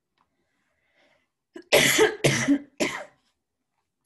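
A woman coughs three times in quick succession, about half a second apart, starting a little over a second and a half in.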